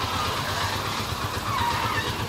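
Small motor-vehicle engine idling with a low, even throb, among street noise.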